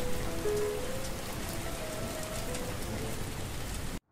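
Steady rain with soft piano notes underneath; both cut off suddenly at the end.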